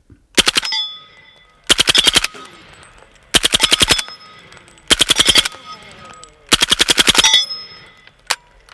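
Suppressed Brethren Arms MP5-style roller-delayed rifle in .300 Blackout firing five full-auto bursts, the first short and the last the longest. Quiet enough to shoot without ear protection.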